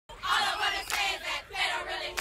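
A large crowd cheering and yelling, the roar swelling and dipping in waves.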